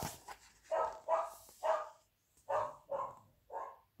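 Dog barking: six short barks in two runs of three.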